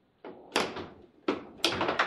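Foosball play: the hard ball struck by the table's rod figures and banging off the table, a quick series of sharp knocks that starts after a brief silence.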